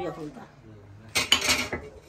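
Metal ladle clinking against the rim of an aluminium cooking pot as it is lifted out of a curry, a quick run of clinks about a second in.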